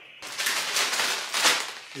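Clear plastic bag of meal-kit ingredients crinkling as it is handled, starting a moment in and loudest about a second and a half in.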